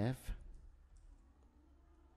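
A few faint keystrokes on a computer keyboard as code is typed, over a low steady hum.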